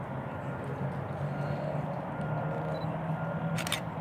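Steady low mechanical hum, with a short cluster of sharp clicks about three and a half seconds in.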